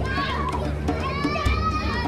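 Children shouting and calling out to each other as they play, their high voices rising and falling, over a steady low hum.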